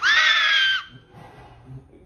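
A man's voice held on a very high, strained falsetto shriek for under a second, cutting off abruptly.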